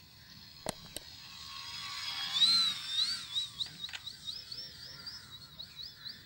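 High-pitched whine of an electric RC trainer plane's 2830 1000KV brushless motor and propeller in flight. The pitch wavers up and down as the plane passes, loudest about two and a half seconds in and then fading. Two faint clicks come near the start.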